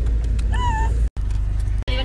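A young woman's short, high-pitched squeal about half a second in, rising and then held briefly, over the steady low rumble of a car interior. The sound cuts out abruptly twice.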